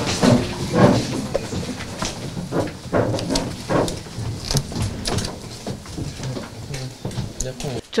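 Courtroom room sound as the judges rise and leave: indistinct murmuring voices and shuffling movement, with scattered knocks and clatters over a steady low hum.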